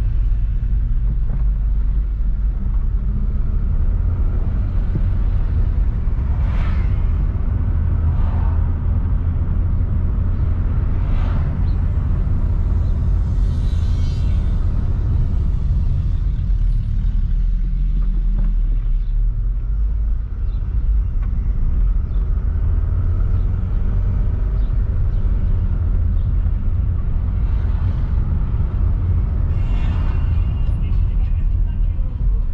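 Steady low rumble of engine and road noise inside a moving car's cabin, with a few brief swells of higher hiss.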